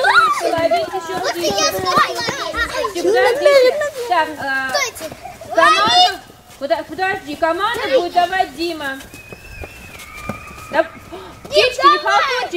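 A group of young children's voices overlapping, calling out and talking at once while playing in a circle, with a brief lull near the end before the voices pick up again.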